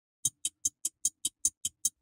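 Clock-ticking sound effect of an intro jingle: nine quick, evenly spaced ticks, about five a second.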